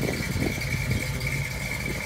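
A 318 V8 in a 1971 Dodge Challenger idling with a steady low rumble, and a thin steady high whine over it.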